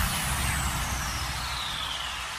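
Electronic dance remix break: the beat cuts out and a hissing whoosh effect glides steadily down in pitch, over a low rumble that fades away.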